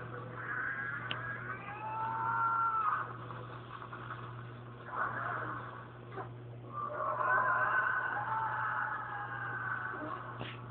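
Animated TV soundtrack playing from a television speaker and picked up by a phone microphone: long wavering cries or sound effects that glide up and down, in two stretches with a lull and a couple of short hits between, over a steady low hum.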